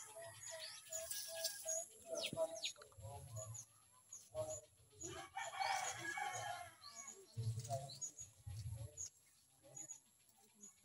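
Domestic turkeys calling as they peck at leafy greens: a quick run of short repeated notes in the first couple of seconds, many brief high peeps, and a louder, rougher call about halfway through, with low thuds and leaf rustling mixed in.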